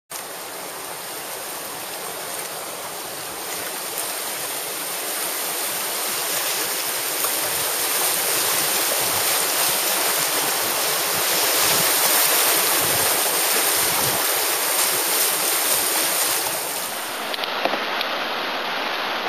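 Rushing whitewater of a small mountain river, heard from an inflatable kayak as it runs down into a rapid. The rush grows steadily louder as the boat reaches the white water, then eases slightly near the end.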